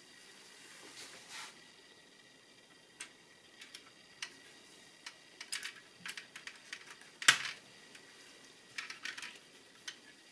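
Small plastic parts of a car instrument cluster being handled and fitted back together: scattered light clicks and taps, with one louder click about seven seconds in.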